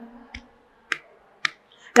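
Three short, sharp clicks at an even beat, about half a second apart, in the pause between lines of a sung devotional chant, over a faint steady tone.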